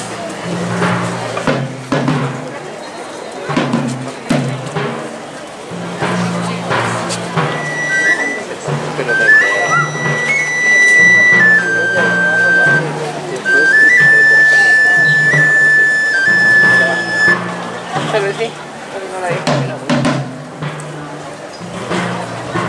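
Procession brass band playing a slow funeral march, with the low brass in a steady pulsing bass line. A high melody of long held notes comes in about eight seconds in and drops out around seventeen seconds, the loudest stretch, while voices murmur underneath.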